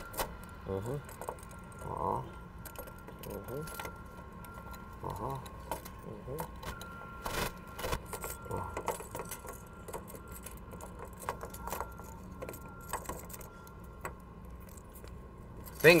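Light metallic clicking and jingling of a pair of handcuffs being worked open at the lock with a small metal tool, scattered irregular clicks, with the cuff coming free near the end.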